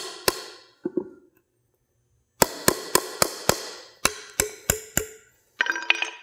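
Claw hammer driving a nail into a wooden 2x4 batter board: two blows, a pause of about a second, then two quick runs of about five blows each. A short metallic ring follows near the end.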